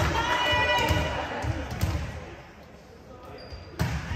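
A volleyball bounced on a hardwood gym floor in a series of thumps about twice a second, with voices and shoe squeaks echoing in the hall. This is followed by a quieter moment and one sharp smack of a hand on the ball just before the end, as a serve is struck.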